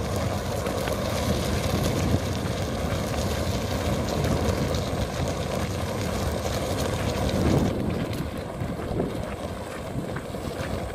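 Steady rushing rumble of wind buffeting the microphone while moving along a dirt track, thinning a little near the end.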